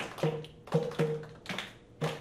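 Goblet-shaped Indonesian hand drum struck by hand, about five ringing beats in an uneven rhythm, each with a low and a higher tone.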